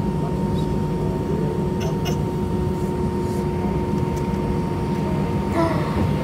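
Steady cabin noise of an Airbus A319 taxiing, heard from a window seat over the wing: an even low rumble of the jet engines with a thin steady whine above it.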